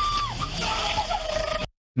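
Distant raised voices, shouting, with the pitch swooping up and down, cut off suddenly near the end.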